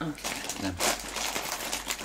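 Snack packaging being handled: a run of quick crinkling and rustling sounds.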